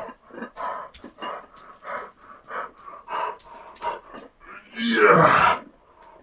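A man panting hard, out of breath from circuit training, with quick breaths about two to three a second. About five seconds in comes one loud, drawn-out groaning exhale.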